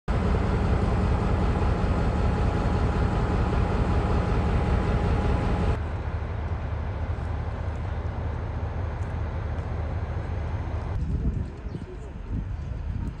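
Steady outdoor noise beside a stopped TCDD passenger train. It is loud with a faint steady tone for about the first six seconds, then drops suddenly to a quieter steady noise, and faint voices come in near the end.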